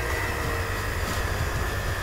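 Electric hand mixer running steadily, its beaters working through thick churro dough as an egg is beaten in; a constant high whine sits over a low motor hum.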